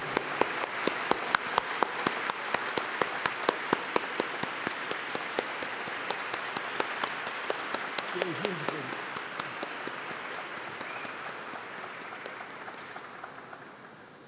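Audience applauding: a dense round of hand claps that gradually dies away over the last few seconds.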